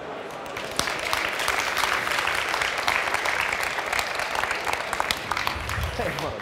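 Audience applauding, with many hands clapping that start about a second in and then keep up a steady level.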